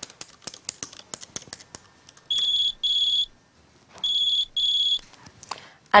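Light clicking of laptop keys, then a phone ringing with an electronic ringtone: two pairs of short, high, steady beeps with a pause between the pairs.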